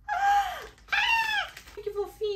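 A woman's two excited, high-pitched squeals, each rising and then falling in pitch, with a short gap between them.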